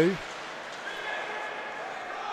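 Ice hockey rink ambience during play: a low, steady wash of arena noise, with a faint thin steady tone for about a second midway.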